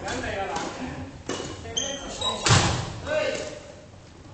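Badminton racket hits on the shuttlecock and footfalls on a wooden gym floor during a rally: several sharp hits, the loudest about two and a half seconds in.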